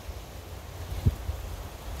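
Wind buffeting the microphone: a steady low rumble, with one brief louder thump about a second in.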